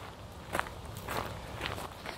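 Footsteps of a person walking on a hiking trail, three steps about half a second apart.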